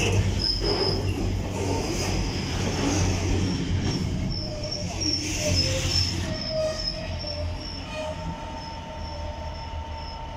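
Container freight wagons rolling past close by, a steady rumble with short, repeated high-pitched wheel squeals. The sound eases over the last few seconds as the end of the train goes by.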